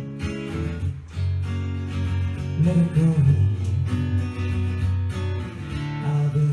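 Acoustic guitar strummed steadily as live accompaniment, in an instrumental gap between sung lines of a song.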